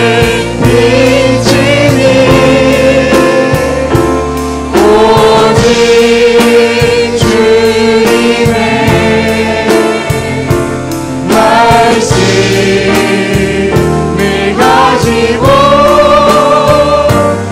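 Male worship leader singing a Korean worship song into a handheld microphone, backed by a band with a steady beat; he holds long notes with vibrato.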